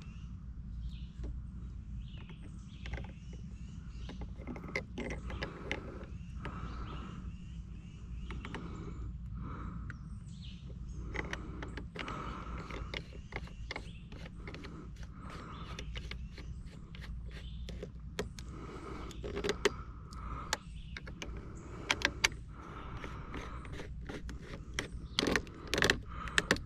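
Small clicks and creaks of plastic plumbing being handled: clear vinyl tubing worked onto a PVC fitting and a threaded plastic coupling turned by hand. The clicks grow louder and more frequent in the last few seconds, over a low steady background rumble.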